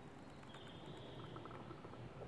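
Faint steady rushing outdoor ambience. A thin, faint high tone runs for about a second, starting about half a second in, with a few faint short ticks.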